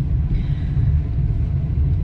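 Steady low rumble of a car driving along a town road, engine and tyre noise heard from inside the cabin.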